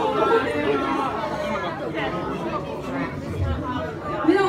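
Several people talking at once, voices chattering in a room.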